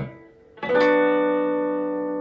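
Hollow-body electric guitar: a ringing chord is damped at the start. About half a second later a single strum of a B minor chord rings out and slowly fades.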